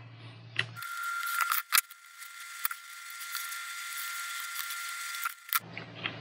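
Faint hiss with a steady high whine that starts suddenly about a second in and cuts off near the end, broken by a few light clicks as small electronic parts are handled in a plastic project box.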